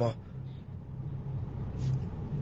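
A low, steady background hum with a faint rumble beneath it, in a pause between a man's sentences. A speech syllable trails off at the very start.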